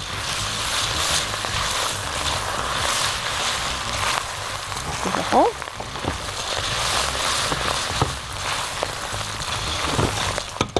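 Small pasta and chunks of sausage sizzling as they brown in a pot on the hob, stirred now and then: a steady sizzle with a few light clicks of the utensil against the pot.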